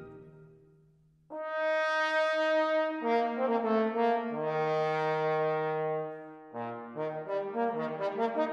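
The orchestra's sound dies away to near silence, then about a second in a trombone enters with long held notes. Other sustained brass notes join a couple of seconds later, and after a brief dip near the end come shorter, quicker notes.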